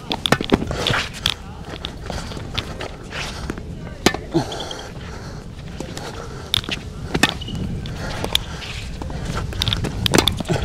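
Tennis rally on an outdoor hard court: sharp pops of the ball struck off the rackets and bouncing, a few every couple of seconds, with shoe scuffs on the court between them.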